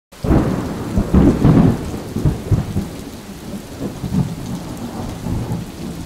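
Thunderstorm sound effect: rumbling thunder over steady rain, loudest in the first two seconds and easing after, cutting off abruptly at the end.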